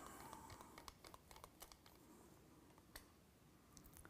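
Near silence with faint handling clicks and scrapes as a phone is seated in an adjustable shoulder-pod clamp and its dial is worked, the clicks thickest in the first two seconds, with one more about three seconds in and another near the end.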